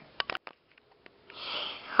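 A few quick clicks near the start, then a person sniffing, drawing breath through the nose, in the second half.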